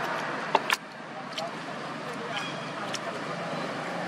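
Steady outdoor background noise with faint distant voices and traffic. Two sharp clicks come about half a second in, with a few fainter ones later.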